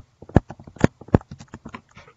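Computer keyboard being typed on: a quick, uneven run of key clicks with a few louder strikes among them.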